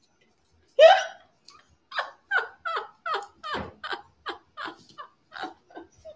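A woman laughing hard: a loud whoop about a second in, then a run of short laughs, about three a second, trailing off.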